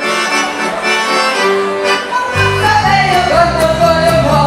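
Accordion playing the opening of a folk dance tune, with low bass notes coming in about two seconds in.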